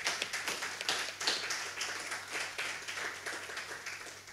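A small seated audience applauding, thinning out toward the end.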